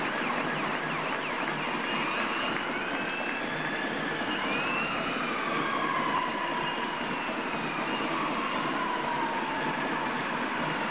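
Ambulance sirens wailing: several slow rising and falling tones overlapping one another, over a steady wash of crowd noise.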